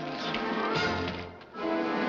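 Studio orchestra playing the introduction to a song: two held chords over a bass line, with a brief dip between them about one and a half seconds in.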